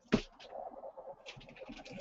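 Handling of a sneaker box and its paper: a sharp crackle just at the start, then soft, irregular rustling with light clicks as the shoe is lifted out.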